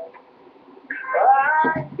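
Male voice singing a drawn-out note that comes in about a second in and slides up and down in pitch.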